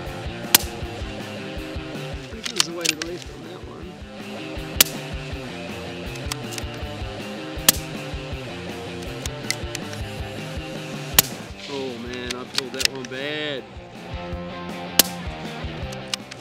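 Five suppressed shots from a Tikka T1X UPR bolt-action rimfire in 17 HMR, fitted with a two-piece Braveheart silencer, spaced about three to four seconds apart. Smaller clicks between the shots come from the bolt being worked to chamber the next round. Background music plays underneath.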